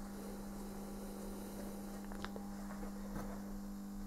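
A steady low hum in the background, with two faint clicks, one a little after two seconds and one about three seconds in.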